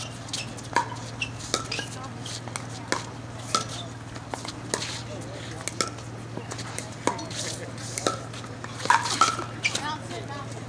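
Pickleball paddles striking a hard plastic ball in a rally at the net: a steady string of sharp pocks about every half second, quickening into a rapid flurry of volleys near the end. A steady low hum runs underneath.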